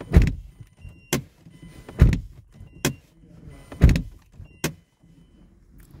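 Mazda CX-7 driver's door shut three times with a heavy thump, each thump followed under a second later by a sharp latch click as it is opened again: the door open-and-close step for putting the car into remote-key programming mode.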